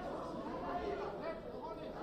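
Indistinct overlapping voices of spectators and corner shouts echoing in a large hall, with no clear words.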